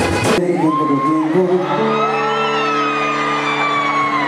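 Live vallenato band music in which the drums and full band stop short about half a second in, leaving a long held chord while the crowd whoops and shouts.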